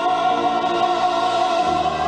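A male baritone holds one long sung note over orchestral accompaniment, in an operatic style. Near the end, lower bass notes come in beneath it.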